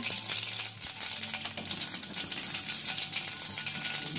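Cumin and mustard seeds crackling and sizzling in hot oil in an iron kadhai: a steady frying hiss dotted with many small pops. This is the tempering (phodni), the sign that the oil is hot enough and the cumin has crackled well.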